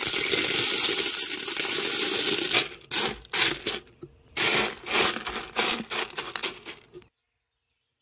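Pea gravel pouring out of a plastic colander into a glass terrarium: a steady clatter of small pebbles hitting the glass bottom for about two and a half seconds, then several shorter pours and shakes of stones.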